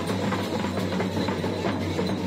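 A dhol, a double-headed barrel drum, beaten in a steady rhythm of about four strokes a second, with a steady low drone underneath.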